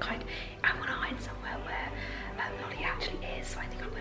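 A young woman whispering to the camera, with a short bump a little over half a second in.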